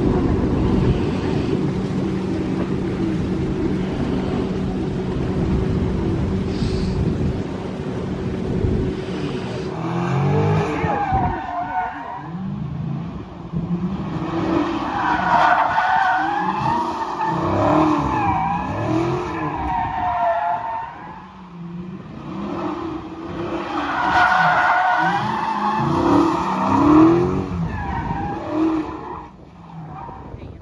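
A steady engine drone over wind noise. About ten seconds in, cars spinning donuts take over: tyres squeal in long, wavering whines that rise and fall, with engines revving, in two spells with a short lull between them.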